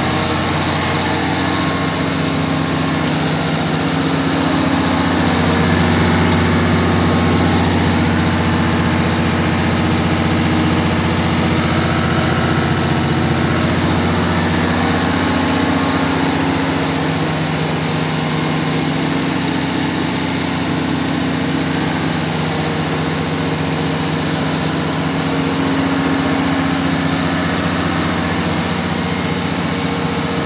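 Newly installed Weichai diesel generator set running steadily on its first test run: an even engine hum with steady low tones, swelling slightly a few seconds in.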